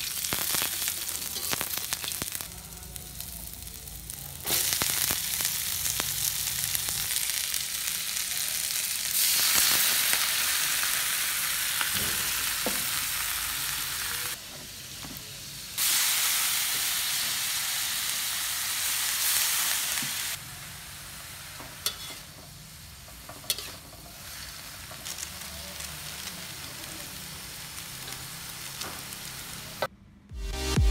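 Sliced shallots and garlic, and later mung bean microgreens, sizzling in hot oil in a wok while a spatula stirs them. The sizzle cuts abruptly between louder and quieter stretches several times, with a few light scrapes of the spatula on the pan.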